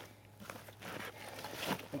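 Maxpedition Vulture II nylon backpack rustling and scuffing as it is handled and turned over by hand, starting about half a second in with a small click.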